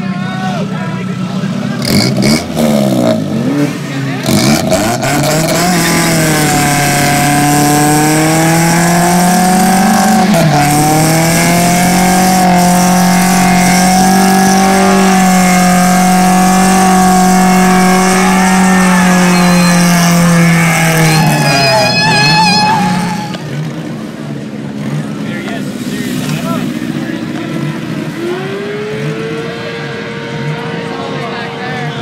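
A car doing a burnout: the engine revs up and down a few times, then is held at high revs for about fifteen seconds with its tyres spinning and squealing, and falls away about twenty-three seconds in.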